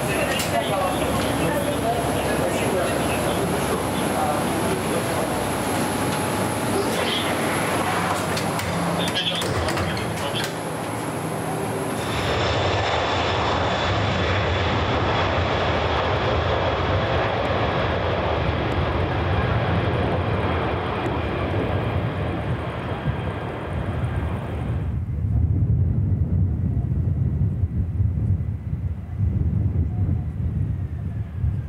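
Jet airliner noise around an airport apron and runway: steady engine noise with a high whine while the aircraft stands at the gate, then a steady, fuller engine noise from about twelve seconds in. From about twenty-five seconds a low rumble with wind gusting on the microphone takes over, as an airliner comes in to land.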